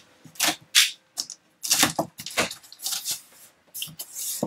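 Cardboard shipping carton being opened by hand: a run of short, irregular scrapes and rustles of cardboard and tape as the taped flaps are cut free and pulled up.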